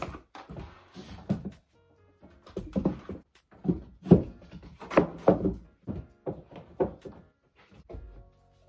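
Stretched canvases and boards knocking and thudding against one another as they are shifted and stacked, about a dozen irregular knocks, the loudest through the middle.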